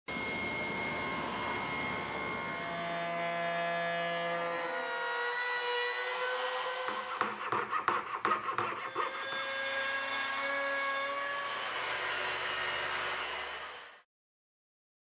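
Woodworking shop sounds: a table saw running with steady tones, then a fine-bladed hand frame saw cutting in quick rasping strokes from about seven to nine seconds in. The sound fades out at the end.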